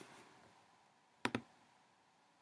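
A computer button clicking twice in quick succession, about a tenth of a second apart, a little past a second in, over faint room tone.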